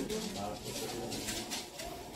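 Low murmur of voices in a hall as the drumming and singing fall silent, with a few faint soft rattles.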